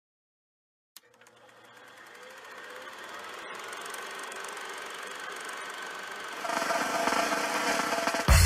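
A machine running with a fast mechanical clatter. It starts with a click about a second in, swells steadily, and grows louder again near the end.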